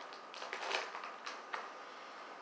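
Faint crinkles and ticks of a protein bar's plastic wrapper being handled, a handful of short ones in the first second and a half.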